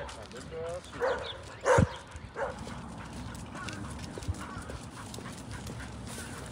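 A dog barking four times in the first two and a half seconds, about two-thirds of a second apart, the third bark loudest.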